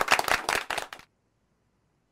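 A rapid, dense patter of sharp clicks that cuts off abruptly about a second in, followed by silence.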